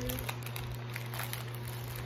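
Foil cookie wrapper crinkling as it is pulled open by hand, in scattered small crackles over a steady low hum.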